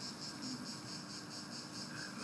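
Faint room tone in a pause between spoken phrases, carrying a steady high-pitched pulsing chirp of insects, about seven pulses a second, over a faint low hum.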